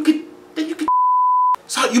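A single steady high-pitched censor bleep, well under a second long, about a second in, switching on and off abruptly with the sound muted to dead silence on either side.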